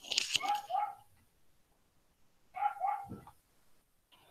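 A small dog barking: two quick short barks at the start and two more about two and a half seconds later, heard through a video-call microphone.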